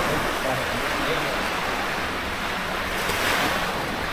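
Small waves washing onto a sandy beach, a steady hiss of surf mixed with wind on the microphone.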